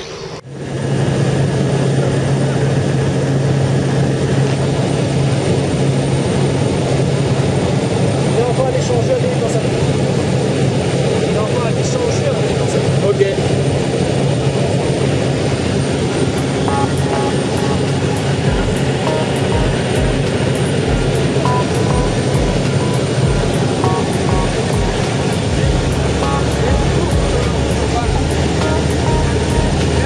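Steady engine and propeller drone of a small jump plane, heard inside the cabin in flight, with a strong low hum.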